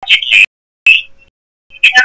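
Choppy speech from a recorded radio call-in show: short loud fragments of voice, each cut off by a gap of dead silence.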